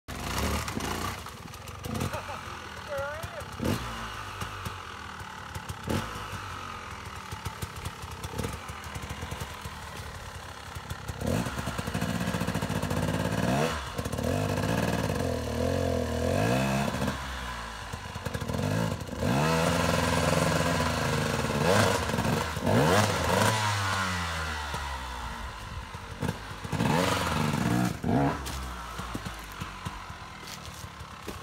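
A dirt bike engine revving up and down again and again as the rider works the bike over a log on a steep slope. It runs quieter for the first ten seconds or so.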